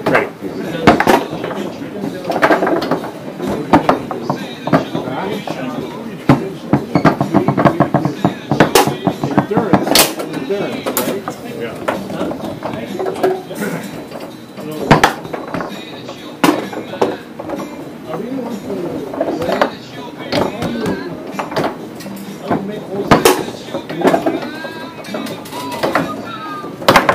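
Foosball game in play: the ball struck by the plastic men and banging off rods and the table's walls, sharp knocks scattered at uneven intervals, over a steady hubbub of voices and background music.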